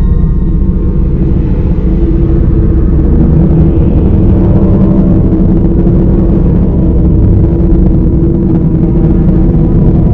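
A loud, steady low rumbling drone with a few held deep tones: the dark ambient sound design of a horror film's soundtrack.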